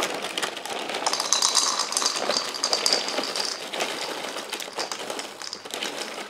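Dry puffed cereal poured from the box into a ceramic bowl: a dense, continuous rattle of pieces hitting the bowl and each other. It is fullest in the middle and thins out near the end.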